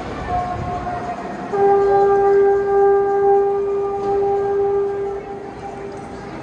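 A horn-like warning signal sounding during a crane lift of a railway car body: a short higher note, then one long lower note held for about three and a half seconds from about a second and a half in, fading near the end, over crowd noise in a large workshop.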